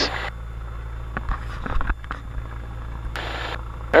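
Cessna 172 Skyhawk's piston engine running steadily at about 1700 RPM with the mixture leaned, heard as a low, muffled hum. It is held there to heat the cylinders and burn off the carbon fouling that made it run rough on single magnetos. A brief hiss comes about three seconds in.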